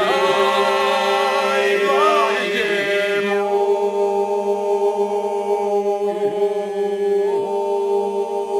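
Men's group singing Albanian iso-polyphony without instruments: the group holds a steady low drone (the iso) while a lead voice sings a wavering, ornamented line above it. After about three and a half seconds the lead settles onto a long held higher note over the drone.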